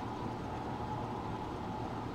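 A steady low hum with an even hiss over it, unchanging in level.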